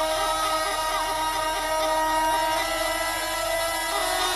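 Techno track in a breakdown: layered, sustained synthesizer tones with a few short pitch glides, and no kick drum or bass.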